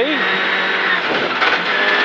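Rally car's engine running hard at stage speed on gravel, heard from inside the cabin, with the engine note dipping briefly about a second in.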